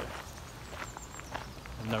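A few soft footsteps of a person walking, over a steady low rumble on the handheld microphone.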